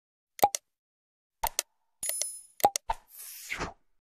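Sound effects of an animated subscribe-button end screen: a string of short clicks and pops, a brief high ring about two seconds in, and a whoosh near the end.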